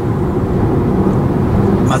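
Steady low rumble of a moving car heard from inside the cabin: road and engine noise.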